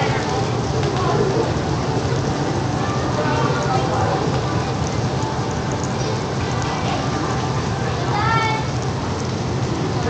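Broth boiling in a tabletop hot pot, giving a steady hiss of bubbling and sizzling.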